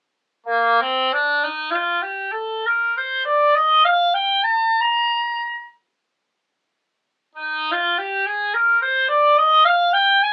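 Nobel PVN02 oboe, played with a handmade reed, runs a rising scale of short, even notes over about two octaves, starting low in its range. After the top note it stops for about a second and a half, then begins a second rising scale from a higher note.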